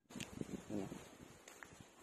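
Faint rustling and light clicks of bitter gourd (ampalaya) vine and leaves being handled as a hand picks a small native fruit from the vine, with a brief faint voice.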